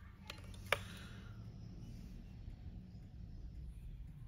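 Small metal airbrush parts being handled: a couple of faint clicks and then one sharper click within the first second, over a low steady hum.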